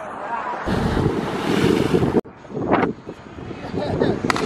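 Wind buffeting the camera microphone outdoors, a loud rumbling rush that cuts off abruptly about two seconds in. After that it is quieter, with a brief voice.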